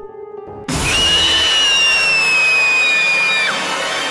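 A horror jump-scare sound effect. Under a second in, a sudden loud noisy crash comes in with a high, thin shriek that falls slowly in pitch for nearly three seconds, then breaks off. Faint background music plays before it.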